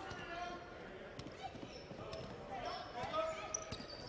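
A basketball being dribbled on a hardwood court, irregular bounces, with players' voices calling out on the court under a low arena hum.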